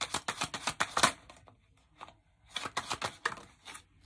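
A tarot deck being shuffled by hand: a quick run of card clicks for about a second, a pause, then a second run.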